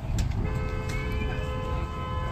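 Road traffic rumbling steadily; about half a second in, a held, steady sound of several tones at once comes in and carries on.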